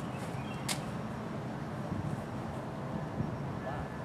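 Outdoor ambience with a steady low rumble and faint bird chirps, broken by one sharp click about a second in.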